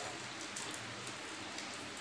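Horse gram broth dripping and trickling from a steel mesh strainer into a bowl of liquid, a steady patter.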